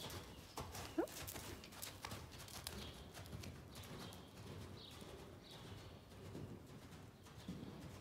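Faint, soft hoofbeats of a horse cantering over loose sand footing.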